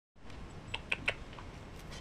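Guinea pig nibbling a leaf held out by hand: a few quick, soft crunches about a second in.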